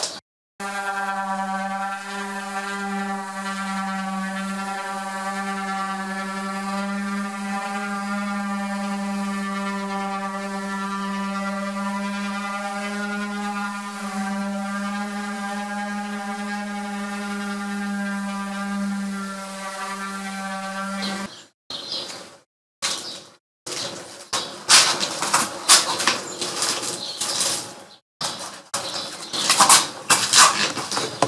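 Corded electric orbital sander running with a steady, even hum as it sands the primer coat on a plywood hull flat. About 21 seconds in, the hum gives way to choppy, broken bursts of sanding noise with abrupt gaps.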